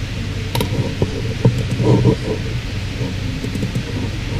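A steady low electrical hum through the hall's microphone and sound system, with a few dull thumps in the first half.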